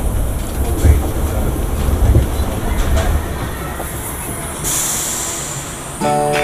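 Arrow Dynamics suspended roller coaster train rolling slowly through the station, its wheels rumbling on the steel track with a few clunks. A short hiss of air comes near the end.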